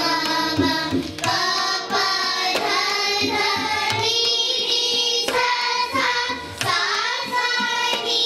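A group of children singing an Indian classical song together, accompanied by tabla.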